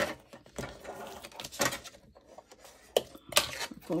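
Cardstock pieces being handled and folded along their score lines: a few short, crisp paper rustles and taps, the sharpest right at the start and another cluster about three seconds in.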